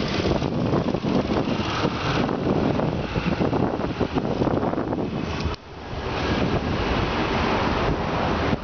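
Wind buffeting the microphone of a moving bicycle, a steady rushing noise that drops out briefly about five and a half seconds in.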